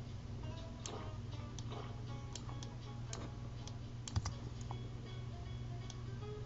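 Scattered sharp clicks of a computer keyboard and mouse, the loudest about four seconds in, over a steady low hum.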